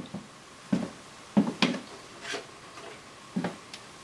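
A few scattered light knocks and clicks, about five over four seconds, against low room tone: someone moving about and handling things while searching for misplaced samples.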